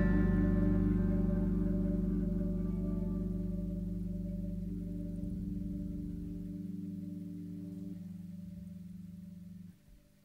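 The song's final guitar chord ringing out and slowly fading for about ten seconds, then cutting off abruptly near the end.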